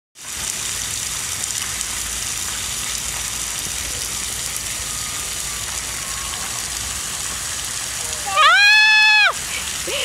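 Splash pad ground jet spraying water onto wet pavement with a steady hiss. Near the end, a loud, high-pitched shriek about a second long as someone gets splashed.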